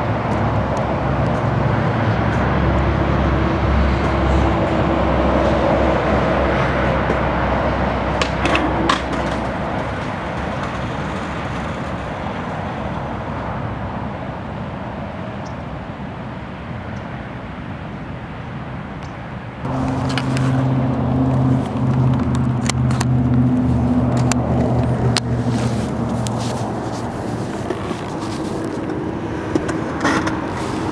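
Steady vehicle engine and road traffic noise, with several held low tones. There are a few sharp knocks about eight to nine seconds in. The hum changes character abruptly around twenty seconds in.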